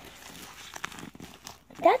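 Faint rustling and crinkling of a disposable Baby Alive doll diaper as it is unfolded and fitted under the doll, with a few small ticks.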